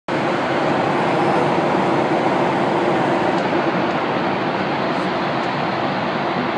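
Steady cabin noise inside a jet airliner in flight: the even rush of engines and airflow.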